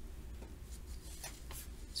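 A pencil and hand on a paper worksheet: a few faint, brief scratches and taps, over a low steady hum.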